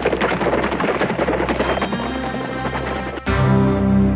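Cartoon action sound effects: a rapid, rattling run of strokes like gunfire over the soundtrack score. At about three seconds this cuts to sustained synthesizer music.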